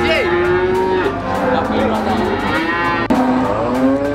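Cattle mooing, several long calls overlapping, one sliding down in pitch near the start.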